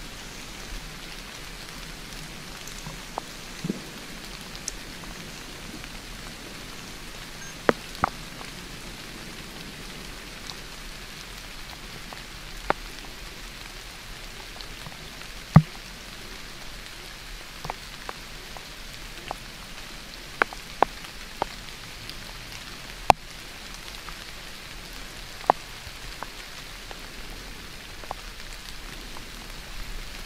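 Steady rain falling through the woods, with scattered sharp ticks of single drops landing close by.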